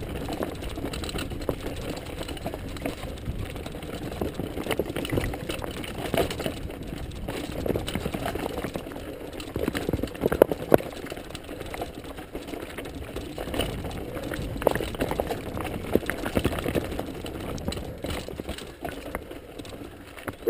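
Mountain bike rolling over a rocky trail: steady tyre and drivetrain rattle with irregular sharp knocks as the bike clatters over stones, the hardest knocks a little past ten seconds in.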